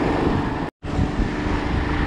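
Boat motor running steadily at trolling speed, with wind on the microphone and water rushing past the hull; the sound drops out completely for a split second just under a second in.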